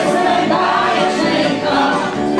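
Music with several voices singing together.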